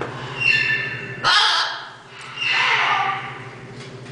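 Scarlet macaw giving three harsh squawks in the first three seconds, the second short and the third the longest.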